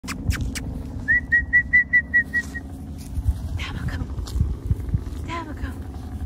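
A person whistling a quick run of about seven short, high, slightly rising notes, calling the puppy, followed by two brief high-pitched vocal calls, over a steady low rumble.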